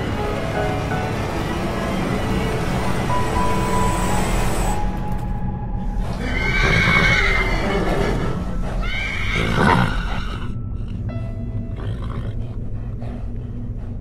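A horse whinnying twice, about six and nine seconds in, over steady film-score music.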